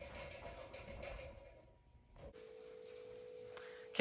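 A faint sound trails off to a brief near-silence. Then, about halfway in, a faint steady hum at a single pitch starts and holds.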